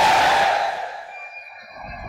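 A drawn-out voice ringing through a loudspeaker system with echo, dying away about a second in, leaving a faint steady hum.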